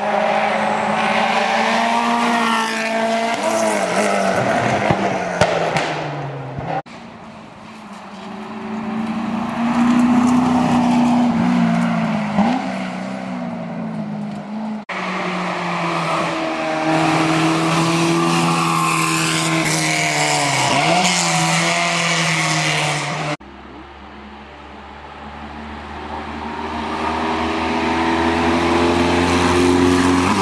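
Hillclimb race car engines pulling hard up the course, each pitch climbing and then dropping with gear changes as the cars approach. The sound breaks off abruptly three times and another run begins. Near the end a small open-wheel single-seater passes close and grows louder.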